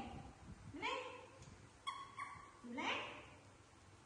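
Baby macaques calling: a few short coos that rise and fall in pitch, spaced about a second apart, with two brief squeaks in the middle.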